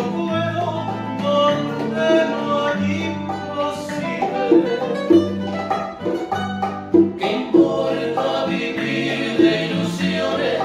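A bolero played on plucked acoustic guitars, with a bass line that moves to a new note about every second.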